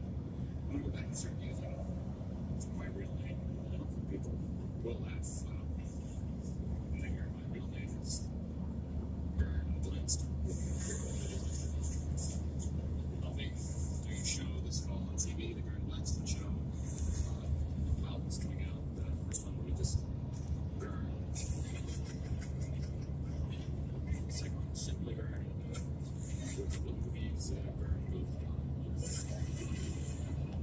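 Steady low hum of a car's engine and tyres heard from inside the cabin at highway speed, with scattered small clicks throughout.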